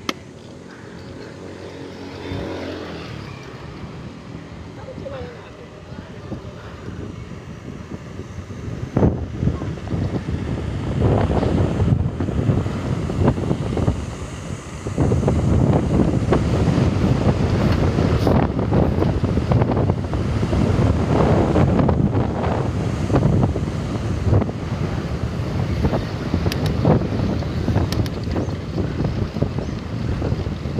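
Wind buffeting the microphone of a handlebar-mounted camera on a moving bicycle: a low, gusty rumble that grows louder about a third of the way in and stays loud through the second half.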